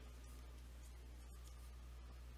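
Faint scratching of a stylus writing on a tablet, over a low steady hum.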